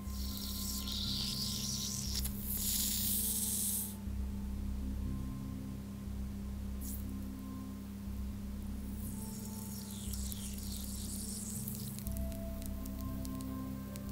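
Small piece of strontium metal fizzing in water as it reacts and gives off hydrogen bubbles: a soft hiss for the first four seconds, fading, then rising again about nine seconds in.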